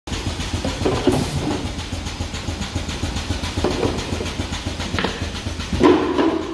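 Bottle-packaging conveyor and its machinery running with a steady fast rattle, broken by a few short clatters of plastic bottles being handled on the line.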